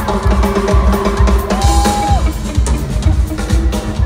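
Live band music led by a drum kit: a steady kick-drum beat of about two to three strokes a second with snare and cymbal hits, and a short held note about halfway through.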